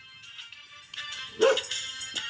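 A dog gives one short bark about one and a half seconds in, over music playing in the background.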